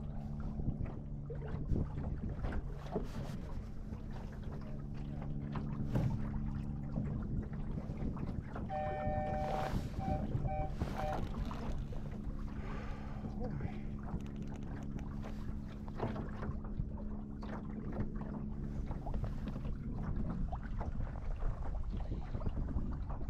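Water rushing against the hull of a small sailing dinghy under sail, with wind on the microphone and occasional knocks from the boat and its rigging. About nine seconds in comes a short series of electronic beeps: one longer tone, then three short ones.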